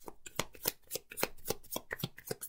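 A deck of tarot cards shuffled by hand: a quick, even run of soft card slaps, about three a second.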